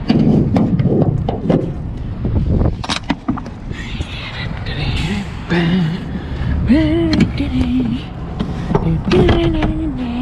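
Rear swing doors of a semi-trailer being closed and latched: a string of sharp metal clanks and knocks from the doors, their hold-back hooks and lock bars, with a few drawn-out pitched sounds in between.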